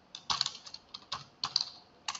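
Typing on a computer keyboard: a quick, irregular run of about ten key clicks in two seconds.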